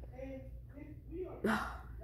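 Faint, murmured voice, with a short sharp gasp about one and a half seconds in.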